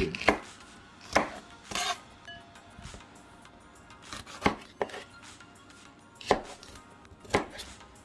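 Large kitchen knife cutting Scotch bonnet peppers on a wooden cutting board: about seven separate knocks of the blade hitting the board, spaced unevenly.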